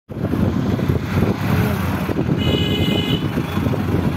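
Steady, loud vehicle rumble with a brief high-pitched tone about halfway through.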